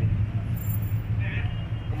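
Steady low outdoor background rumble, with a brief faint voice about a second and a half in.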